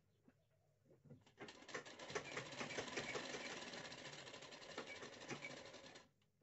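Sewing machine running, stitching through two layers of sleeve fabric, with a fast, even clatter of needle strokes. It starts about a second in and eases off gradually toward the end.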